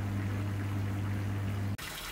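Hozelock Pond Vac's electric motor running with a steady low hum while it sucks water out of the tank. The hum cuts off suddenly near the end, leaving a faint even hiss.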